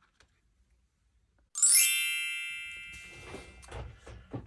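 A bright chime sound effect: a cluster of high ringing tones that comes in suddenly about a second and a half in and dies away slowly over the next two seconds.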